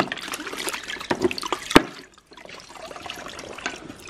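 Horse grooming brushes being swished and dunked by hand in a plastic bucket of water: irregular splashing and dripping, with one sharp knock a little before halfway and a brief lull just after it.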